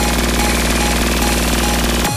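Electronic dance music with no drum beat: a dense, buzzing distorted synth held over a steady bass note, stuttering in a fast machine-gun-like pulse.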